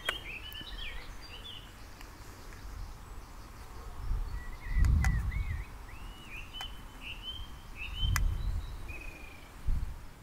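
Small songbirds chirping in short, quick curving notes, in a cluster near the start and another run from about halfway on. Two low rumbles, around the middle and near the end, are the loudest sounds, with a few faint sharp ticks among them.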